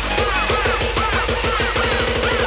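Uptempo hardcore techno track, with no vocals: a looping riff of short synth notes that swoop up and down over heavy bass. The kick drum hits come faster and faster into a roll, building up to the next section.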